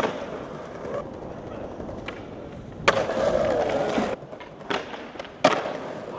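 Skateboard on stone tile paving: a sharp clack of the tail popping at the start, the wheels rolling over the tiles, a loud landing about three seconds in followed by about a second of louder rolling, then two more clacks near the end.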